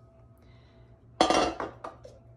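A metal bundt pan set down on a tiled kitchen countertop: a short clatter about a second in, followed by a light knock.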